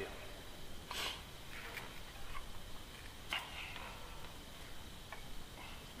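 A man sniffing the air through his nose a few times, smelling cows. A faint steady high-pitched hum sits behind it.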